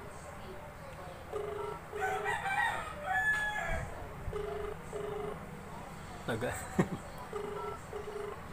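Telephone ringback tone through a phone's speaker: a double ring, two short beeps together, repeating about every three seconds while the call waits to be answered. A rooster crows once in the background about two seconds in.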